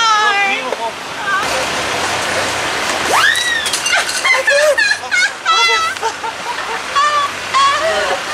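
People's voices and laughter, with a high cry that rises and falls about three seconds in, over a steady hiss of street noise.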